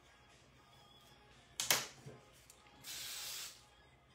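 Aerosol hairspray: a steady hiss of well under a second near the end, after a short, sharp burst about one and a half seconds in.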